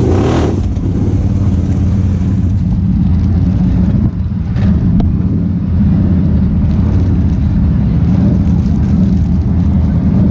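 Can-Am side-by-side's engine running steadily, a low drone heard close from the driver's seat, briefly dipping about four seconds in.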